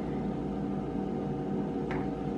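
A steady hum with several even tones, with one faint click near the end.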